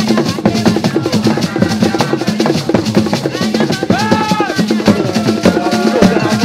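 Traditional Ghanaian drum ensemble playing a fast, dense rhythm, with a voice singing a held, wavering note for about a second around the middle.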